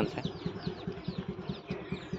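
A vehicle engine idling steadily with an even, rapid pulse, left running to warm up after a cold morning start because the vehicle has been giving trouble and needs warming before it runs well.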